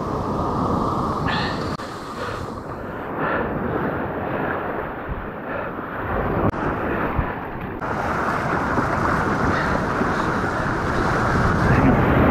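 Surf breaking and washing up the sand at the water's edge, with wind buffeting the microphone. The wash builds louder near the end.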